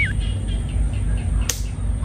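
A short whoosh sound effect about one and a half seconds in, over a steady low rumble of outdoor background noise. A wobbling cartoon-style tone cuts off at the very start.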